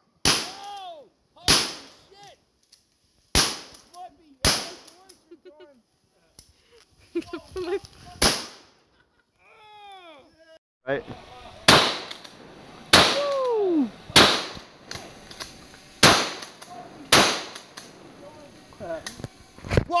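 12-gauge shotguns firing about ten loud shots at uneven intervals, with a lull of a few seconds partway through.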